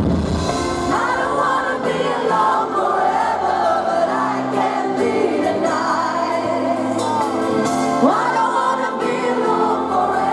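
Live pop ballad: a woman singing long, gliding notes over piano and bass guitar, with an upward vocal swoop about a second in and again near the end.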